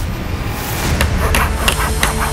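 Background music with a steady low bed, and a few sharp clicks in its second half.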